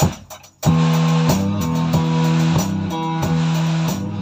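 A last count-in click, then two guitars and a drum kit come in together about half a second in: a small rock band starting a song, with held guitar chords changing every second or so over the drums.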